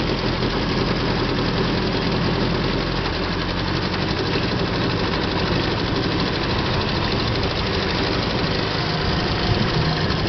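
18 hp two-stroke outboard motor running steadily at low speed, with no change in revs.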